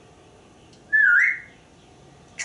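African grey parrot giving one short whistle about a second in, dipping slightly and then rising in pitch before holding the note.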